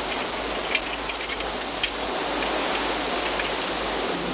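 Steady wash of sea surf breaking on a rocky shore, with a few faint small clicks.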